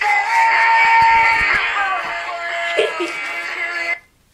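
Recorded pop song playing, a sung lead vocal over backing music, cutting off suddenly at the end.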